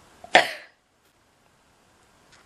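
A woman's single short cough.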